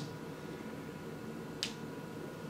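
Faint steady room hiss in a pause between speech, broken once by a single short, sharp click about a second and a half in.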